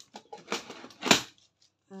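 A hard plastic compartment storage box of metal eyelets being picked up and handled: small clicks and rustles, with one loud sharp plastic clack about a second in.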